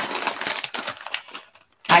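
Plastic snack bag crinkling and rustling as it is handled, a quick run of small crackles that dies away about a second and a half in.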